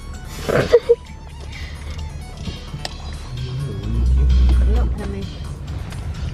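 A song playing loud on the car stereo inside the van's cabin, with heavy bass that swells about four seconds in. A short loud burst of sound about half a second in.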